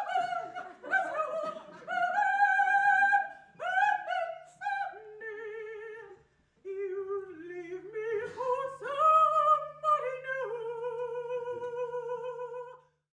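A woman singing solo in an operatic style, with wide vibrato and long held high notes in separate phrases, and a brief pause about six seconds in. A faint steady low hum runs under the second half.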